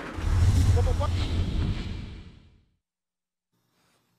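A low outdoor rumble with faint voices in it, cutting off abruptly about two and a half seconds in and followed by silence.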